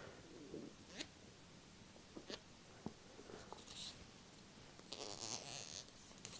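Fingertips tapping and scratching on an eye-test fixation stick for ASMR: a few faint separate taps in the first half, then short, soft scratching rustles.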